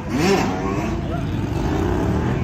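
Sport motorcycle engines running among a crowd, one briefly revving up and back down right at the start, over a steady low engine rumble and voices.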